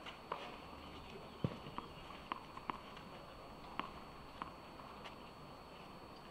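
Faint, scattered short taps on a clay tennis court between points: a tennis ball being bounced and players' footsteps, about seven taps at irregular spacing over a low steady background.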